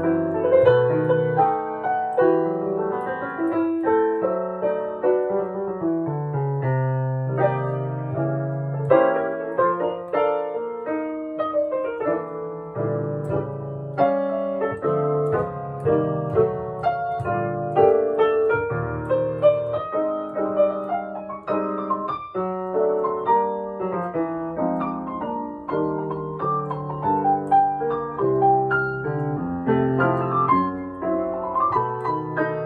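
1898 Steinway Model C seven-foot-six grand piano played without a break, held bass notes under chords and melody in the middle register. The piano has new hammers and a fresh regulation.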